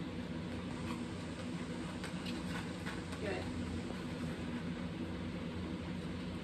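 A dog eating dry kibble from a paper plate, with faint chewing over a steady low background hum; a single spoken "Good" a little past halfway.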